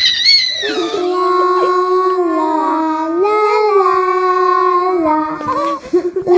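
A child's voice singing or wailing long held notes in a slow, eerie line, opening with a high falling glide.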